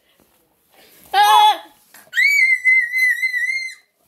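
A child's short, loud cry falling in pitch, then a long, high, steady squeal with a slight wobble, held for nearly two seconds, mimicking a heart monitor's flatline tone.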